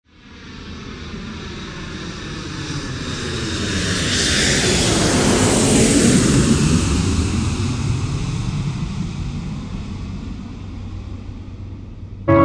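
Jet airliner passing by: its engine roar grows steadily louder, peaks about six seconds in with a sweeping whoosh, then fades away.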